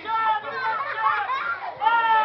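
High-pitched, child-like voice talking.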